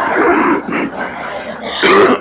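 Audience laughing at a joke, the laughter thinning out, with a short, sharp louder burst near the end.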